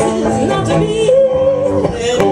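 Two cellos played with bows under a sung melody, the voice sustaining one long wavering note through the second half.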